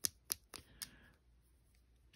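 Several sharp clicks and taps within the first second as nail brushes are handled, their handles knocking against each other and against long acrylic nails.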